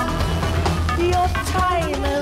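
Live band music in an instrumental passage of a rock song: a drum kit hitting over sustained synth tones and bass, with a few sliding pitches near the end.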